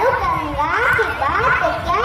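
A young girl reciting a Hindi poem into a microphone, in a high child's voice that runs on without a pause.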